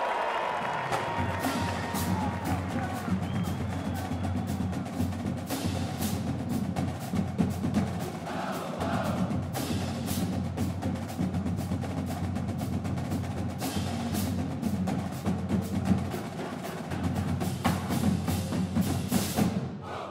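Marching band drumline playing a percussion cadence: quick snare strokes and sharp stick clicks over bass drums, fading out right at the end.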